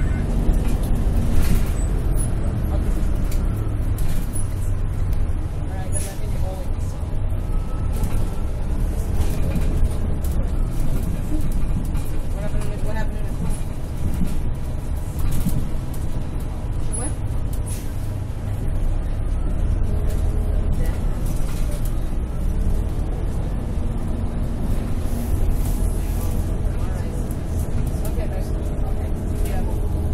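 Steady low rumble of a city bus's engine and road noise heard from inside the cabin, with faint voices of other passengers over it.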